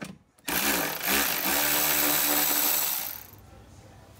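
Cordless ratchet motor running: a couple of short blips, then a steady whine for about two seconds before it stops, turning a bolt at the coolant-hose bracket in the engine bay.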